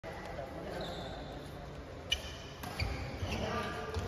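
Badminton racket hitting a shuttlecock: a sharp crack about two seconds in, answered by a second hit about half a second later, ringing in a large indoor hall. Voices come in near the end.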